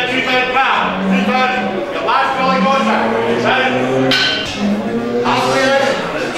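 Cattle mooing: several long, low calls one after another, some overlapping, with one deeper call in the middle.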